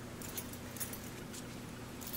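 Quiet room tone: a steady low hum with a few faint, light clicks and jingles.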